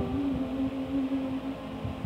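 A woman singing one long held note that ends a phrase of the song, over quiet backing music. The note fades out about a second and a half in.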